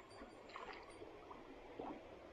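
Faint creek water running and trickling, close to near silence.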